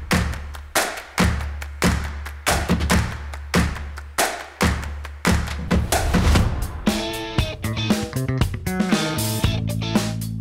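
Background music: a steady drum beat, about one strike every 0.6 seconds, joined by held pitched notes about seven seconds in.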